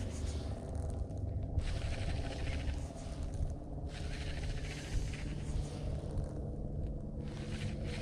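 Wind buffeting the microphone with a steady low hum underneath, while a baitcasting reel is cranked in spells with short pauses between them, as the lure is worked slowly along the bottom.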